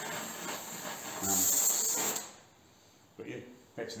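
Oxy-acetylene torch flame hissing while heating an aluminium part to anneal it. The hiss swells about a second in, then cuts off suddenly about two seconds in.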